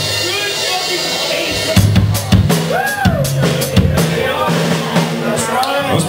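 Live rock band's drum kit and guitars playing loosely, with drum hits from about two seconds in over held low notes that change in steps. Voices come through now and then.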